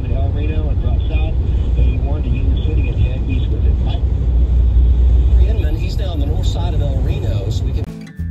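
Road and engine noise inside a moving car's cabin at highway speed, a steady low rumble. Indistinct voices run over it.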